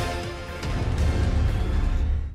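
News-channel theme music for the logo ident. It dips about half a second in, then comes back with heavy deep bass.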